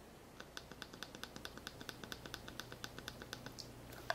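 A quick, even run of small clicks, about eight a second, from handling the controls of a Garmin GPSMap 66st handheld GPS.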